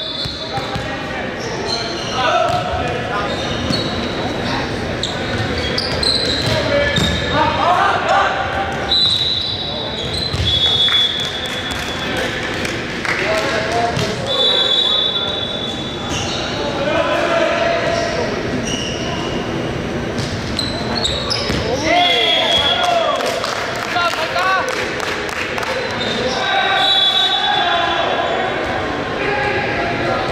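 Indoor volleyball play in a large, echoing gym. The ball is struck and bounces on the wooden court, players call out, and sneakers give repeated short, high squeaks on the hardwood.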